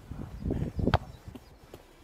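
A single sharp thud of a football about a second in, over low rumble and small knocks.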